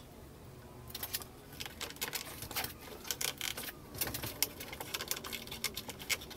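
Irregular plastic clicks and scrapes as a white plastic inline duct fan is handled and pushed into a round opening in the side of a wooden box.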